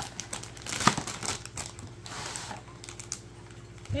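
Cardboard toy box being opened and the toy pulled out: crinkling and rustling of cardboard and packaging, with a sharp click about a second in.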